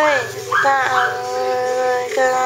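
A Pomeranian howling. One long held howl falls away just after the start, then another rises about half a second in and holds steady nearly to the end.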